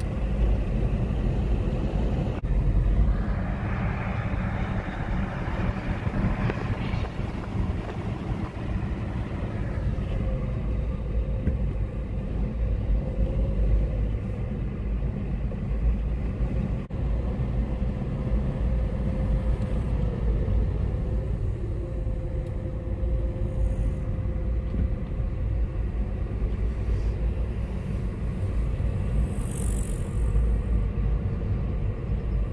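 Car driving on a country road, heard from inside the cabin: a steady low rumble of engine and tyres.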